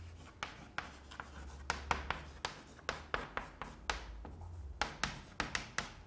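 Chalk writing on a blackboard: a quick string of sharp taps and short scratches as the letters and figures are written.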